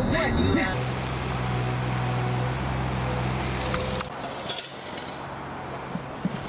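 A voice briefly at the start, then the steady low drone of a moving vehicle's engine and road noise. About four seconds in it cuts off to a much quieter outdoor background.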